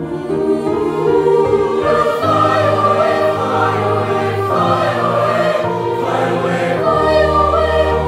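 A choir of boys' and young men's voices singing in parts, holding long notes. A low part comes in about two seconds in and steps lower near the end.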